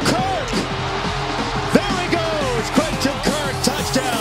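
Background music in which gliding, wavering melody lines sound over a low bass.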